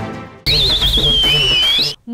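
Background music fades out, then a short programme sting of about a second and a half: a high, wavering whistle that slides down in pitch, over music, cut off abruptly.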